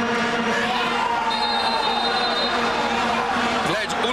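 Stadium crowd under the steady, droning hum of vuvuzelas, with a referee's whistle blown for about a second, a little over a second in.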